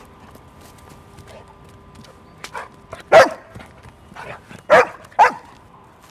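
A dog barking three times: one loud bark about halfway through, then two more in quick succession near the end.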